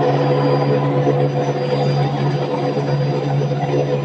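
Rotary screw air compressor with a variable-speed permanent-magnet motor running loaded, its cooling fan on: a steady drone with a low hum and a few steady higher tones.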